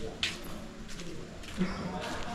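Indistinct voices of people talking in the background, too faint or far off for words to be made out.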